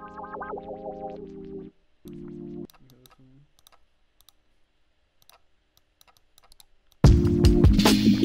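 A melody loop of filtered chords previewed in short snippets that cut off, the first about a second and a half in and another shortly after. A few quiet seconds of faint clicks follow. Then, about seven seconds in, a drum loop and the chords start playing together, loudly.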